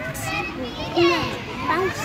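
Children's voices in the background: kids playing and calling out to each other, with scattered short high-pitched cries and chatter.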